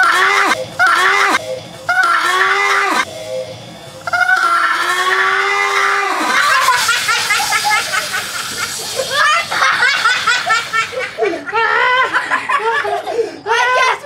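Children screaming and laughing loudly, in long drawn-out shrieks and then quicker bursts of laughter, set off by a Coke-and-Mentos eruption spraying foam over them.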